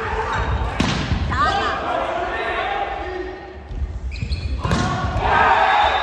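Volleyball rally in a large gym hall: sharp hits on the ball about a second in and again near five seconds, with sneakers squeaking on the court floor. Players' shouts and cheers rise as the point ends.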